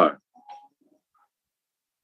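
A man's spoken word trailing off, then near silence, broken only by one faint brief sound about half a second in.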